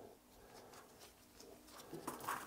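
Near silence: room tone with a few faint, soft sounds of parts being handled.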